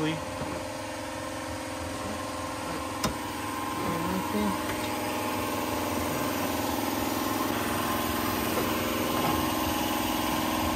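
An engine idling steadily, a continuous even hum that slowly grows louder, with a single sharp click about three seconds in.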